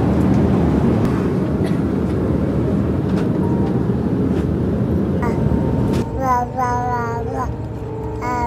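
Loud, steady airliner cabin noise, an even hum of engines and rushing air. About six seconds in it cuts off and gives way to light background music.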